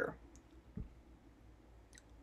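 Quiet room with a faint click and a soft low thump just under a second in.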